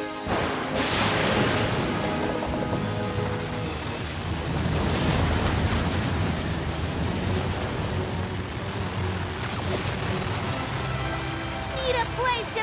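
Cartoon whirlwind sound effect: a loud rushing wind with deep rumble that starts suddenly just after the start, over background music.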